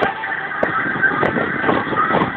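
Car noise heard from inside the cabin in slow, crowded traffic, with music from the car stereo faintly underneath.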